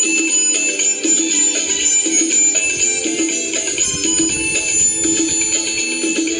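Harmonica playing a Bollywood romantic duet melody over a rhythmic musical accompaniment, one pitched note after another.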